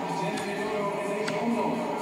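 Music and indistinct voices from the broadcast, heard through a television speaker.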